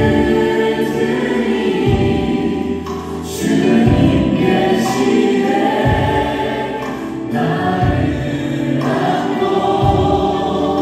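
A live worship band playing gospel music in a church hall, with many voices singing together over keyboard and guitar, a bass drum hit about every two seconds and an occasional cymbal crash.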